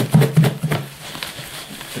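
Perch fillets and cornmeal-flour coating being shaken in a covered plastic bowl, a quick run of knocks and rattles against the bowl in the first second that grows quieter after.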